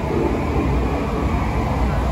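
Steady low rumble and rushing noise of the dark boat ride's ambience, heard from inside the boat.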